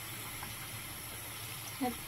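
Tap water running steadily from a bathroom faucet into a sink full of water.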